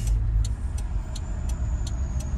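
Suzuki Carry kei truck's engine idling under the seats, a steady low rumble heard from inside the cab. A light regular ticking runs alongside it, about three ticks a second.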